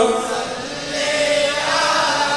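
A group of voices chanting a devotional line together, heard through a public-address system. It starts soft and swells again about a second in.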